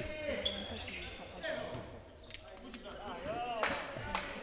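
A handball bouncing a few times on a sports hall's wooden floor, with faint shouts from players and reverberant hall noise.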